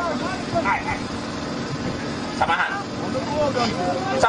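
Scattered voices of people talking, over a steady low mechanical hum like a running engine.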